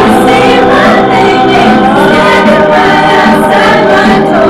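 A small group of female voices singing together, holding long notes.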